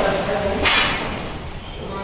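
A person speaking, with a short hiss about two-thirds of a second in.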